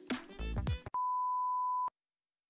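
Background music breaks off, then a broadcast test-card tone: one steady, pure, single-pitch beep held for about a second and cut off abruptly.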